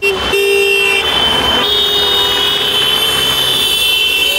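Car horns held in a continuous honk over the noise of cars passing close by, a second horn tone joining about one and a half seconds in.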